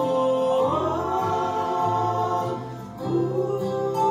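Two women singing a gospel song as a duet into microphones, holding long notes over an accompaniment with a moving bass line. The singing dips briefly just before three seconds in, then a new note is held.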